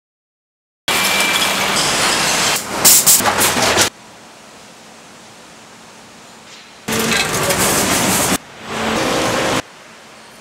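Three loud stretches of mechanical noise, a rushing din over a steady low hum. Each one starts and cuts off abruptly, and the first ends in a run of sharp clatters.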